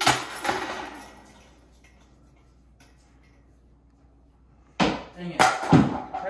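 A disc golf putter hits the steel chains of a metal basket with a sharp crash, and the chains jangle and ring down over about a second and a half as the disc drops into the basket. Near the end come more sharp, loud knocks and a voice calling out.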